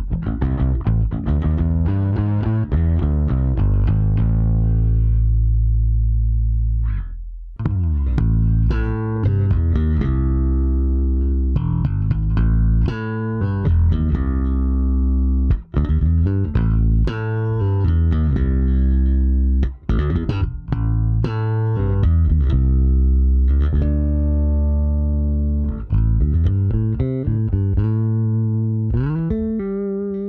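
Electric bass guitar played clean through a Bergantino Super Pre with its compressor maxed out in serial mode. Hard slapped notes and lightly fingered notes ring out clearly at an even volume, with sharp attacks, held notes and a slide up near the end.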